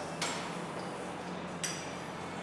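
Two sharp metallic clinks about a second and a half apart from a chest fly machine's weight stack and frame as reps are done, over a steady low hum.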